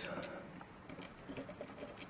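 Faint, scattered clicks and scratches of fingers handling a tiny screw and a nylon standoff against a circuit board.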